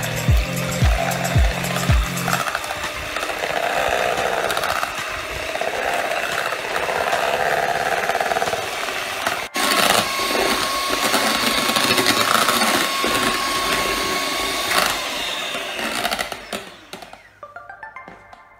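Electric hand mixer whirring as its beaters whip a creamy mixture in a bowl, under background music whose beat stops after about two seconds. The whirring breaks off for an instant about halfway through and dies away near the end.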